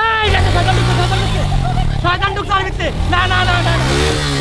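A Suzuki motorcycle engine running under a learner rider, its revs rising and easing off. A man shouts loudly right at the start, and there is more excited yelling around the middle.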